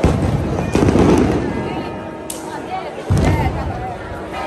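Fireworks going off in loud bangs, each followed by a low rumbling echo: one at the start, a cluster about a second in, and another near the end.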